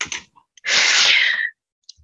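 A person sneezing once: a loud, breathy burst about a second long that ends with a short falling tone.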